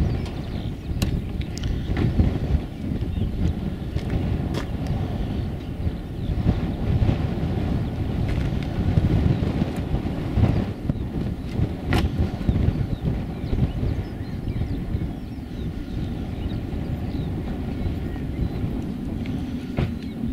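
Strong gusty wind buffeting the microphone, a heavy uneven low rumble, with the faint steady whine of a distant airliner's engines on final approach beneath it.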